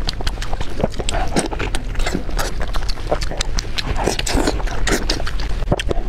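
Close-miked wet, sticky squelching and clicking as a large piece of roasted pork belly is squeezed and dipped in chili-oil sauce by plastic-gloved hands, a dense run of irregular clicks.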